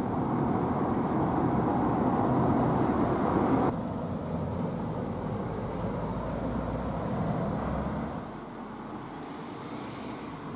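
Street ambience dominated by a motor vehicle going by, a steady rushing noise that drops suddenly about four seconds in, leaving a lower rumble that fades to quieter background near the end.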